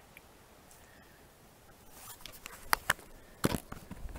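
Camera handling noise as the camera is moved down onto the stone pool edge. Quiet at first, then about halfway in a few sharp clicks and knocks, with the deepest knock a little after three seconds in.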